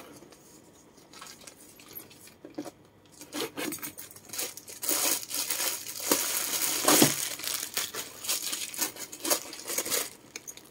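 Plastic bag and bubble-wrap stuffing crinkling and rustling as hands rummage inside a leather bag. It is quiet at first, then crackles steadily from about a third of the way in, loudest around the middle.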